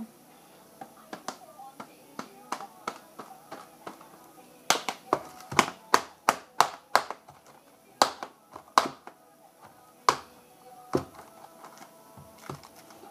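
A knife point jabbing through the plastic film cover of a frozen microwave breakfast tray: a run of sharp, irregular taps and clicks, coming faster and louder from about five to nine seconds in.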